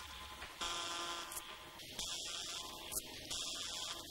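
Electronic security alarm buzzer sounding in repeated blasts of about a second with short gaps between them, signalling that the building's lockdown system has been triggered and its security shutters are closing.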